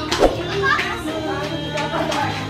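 Children's voices and people chattering over music, with a short knock about a quarter of a second in.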